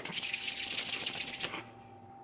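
Palms rubbed briskly together: a rapid swishing of about a dozen strokes a second that stops about one and a half seconds in.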